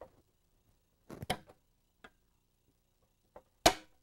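Metal clicks from hand work on a Rotax engine's fan-belt pulley and flywheel as the crankshaft is turned by hand to work the pulley into place: a short cluster of clicks about a second in, a faint tick near two seconds, and one sharp click near the end.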